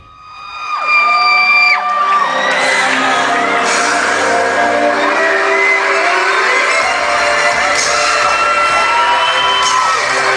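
Audience screaming in long high-pitched cheers as a K-pop dance track starts over the sound system in a large echoing hall. The bass of the track comes in about seven seconds in, and more screams rise near the end.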